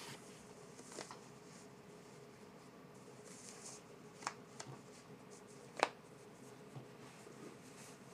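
Faint rustle of a knit toe sock being pulled up a leg by hand, with three small clicks, the sharpest about six seconds in, over a faint steady hum.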